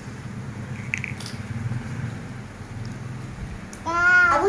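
Faint squishing and small clicks of soft agar-agar jelly being handled and eaten from small plastic cups, over a low steady room hum.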